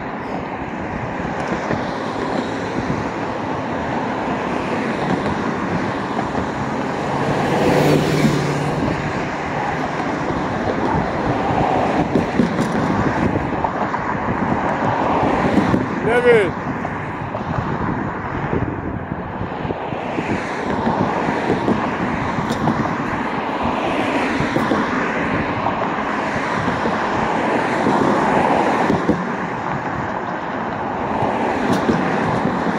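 Street traffic noise from cars on a road, steady throughout. A brief squeal glides up and down about halfway through.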